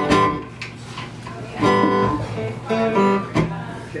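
Steel-string acoustic guitar strummed in several separate chords, each left to ring out, as a tuning check before playing.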